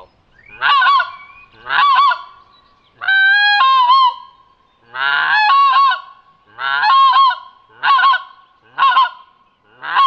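Pinkfoot Hammer goose call sounded by coughing into it, giving a series of about eight short, high-pitched pink-footed goose calls roughly one a second, each rising at its end as the cupped hands close over the call; two of them, about three and five seconds in, are drawn out longer.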